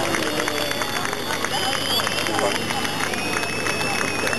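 Fireworks crackling densely and continuously as burning stars fall, over voices of onlookers.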